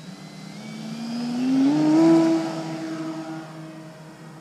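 Electric motor and 13x8 propeller of an RC Tiger Moth biplane rising in pitch as the throttle opens for the takeoff. The plane is loudest about two seconds in as it passes, then holds a steady pitch and fades as it climbs away.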